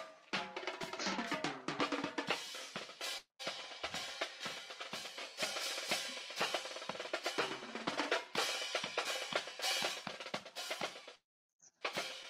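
A marching band's drum line playing a rhythmic pattern of snare and bass drums with cymbal crashes. The drumming stops briefly near the end.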